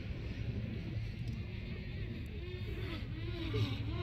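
Beach ambience: a steady low rumble of wind and surf on the phone microphone, with muffled voices talking from about halfway through.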